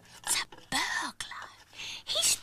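Whispered speech: a few short hushed phrases.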